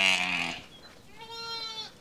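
Sheep bleating twice: a loud, low call at the start and a higher, quieter bleat about a second in, from a ewe and her newborn lamb.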